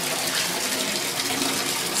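Bath tap running steadily into a filling bathtub, a constant rush of water.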